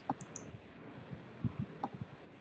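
A handful of short, irregular computer clicks over faint background hiss.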